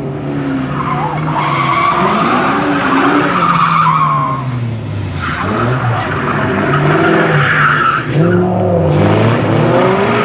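Drift cars, a Ford Mustang and a Nissan 240SX, sliding with engines revving up and down and tyres squealing in two long stretches, with a short dip about halfway through.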